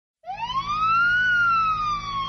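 Police siren starting up in a single wail that rises in pitch for about a second, then slowly falls, over a low steady rumble.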